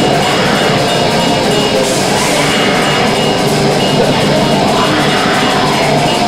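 Black metal band playing live: distorted electric guitar and bass in a dense, loud, unbroken wall of sound at a steady level.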